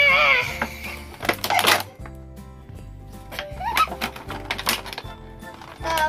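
Background music with a steady beat, over sharp clicks and rattles of a hard plastic gift-set case being pried at and handled. A short voiced gasp comes right at the start.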